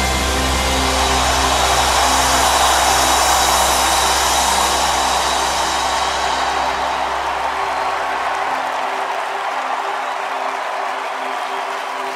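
A live rock band's final chord ringing out, held tones under a bright wash of cymbals and crowd noise that slowly fades. The low bass note drops away about two-thirds of the way through, leaving the higher held tones.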